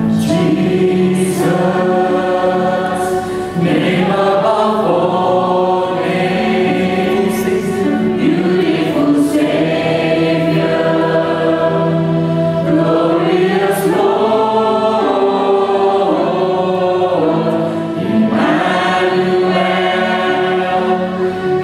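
A congregation singing a slow worship hymn together, holding long notes, led by a worship leader and accompanied by piano.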